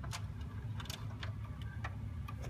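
VHS videocassette recorder drawing in and threading a just-inserted tape: scattered light mechanical ticks and clicks over a steady low hum.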